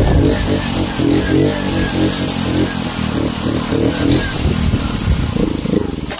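Honda CD70's small single-cylinder four-stroke engine running under way, its revs rising and falling over and over as the throttle is worked.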